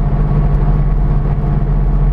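Cabin noise of a Mercedes-Benz diesel car cruising at steady speed: a constant low engine drone under an even tyre and road hiss.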